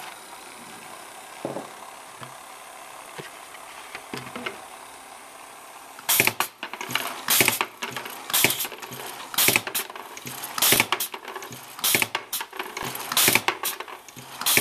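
Pneumatic T-cork insertion machine cycling again and again, starting about six seconds in: short, sharp bursts of air and clacks, one or two a second, often in pairs. Before that there is only a low steady hiss with a few faint knocks.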